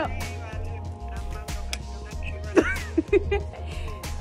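Background music with a steady heavy bass beat, with a brief voice sliding up and down about two and a half seconds in.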